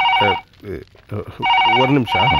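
Desk telephone ringing with an electronic warbling tone in a double-ring cadence: one ring at the start, then the next pair of rings beginning about a second and a half in. A man's voice is heard over it.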